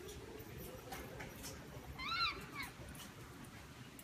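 A pet caique parrot giving one short call that rises and falls in pitch, about two seconds in, with a few faint clicks shortly before it.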